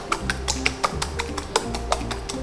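Fork beating eggs in a ceramic bowl, quick regular ticks of metal on the bowl at about four a second, over background music with a steady bass line.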